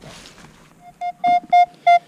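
Minelab Equinox 800 metal detector sounding its target tone: a quick run of short, steady, mid-pitched beeps starting about a second in, as the coil passes over a buried metal target at about four inches.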